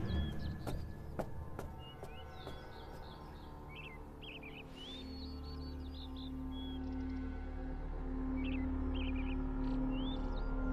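Soft ambient background score with a steady low drone, overlaid by birds chirping on and off throughout. A few light ticks sound in the first two seconds, and a held tone enters about halfway through.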